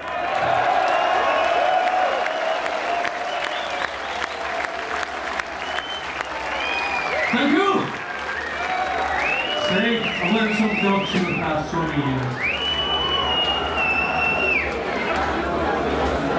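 Concert crowd cheering and applauding between songs, with shouts and high whistles rising above the noise of the crowd.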